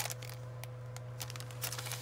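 Quiet handling of a plastic-sleeved sticker pack: a sharp tap right at the start, then a few faint ticks and light rustles over a steady low hum.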